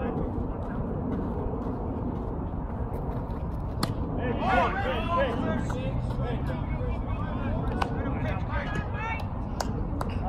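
Players and spectators shouting across a floodlit baseball field over a steady low rumble, with one sharp knock about four seconds in and calls picking up right after it.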